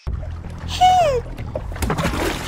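Cartoon water sound effects of a small creature splashing and thrashing in water, starting suddenly. About a second in comes a short high cry that falls in pitch.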